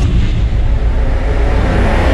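Intro sound-effect rumble: a deep, steady low rumble with a hissing rush over it, building toward a burst.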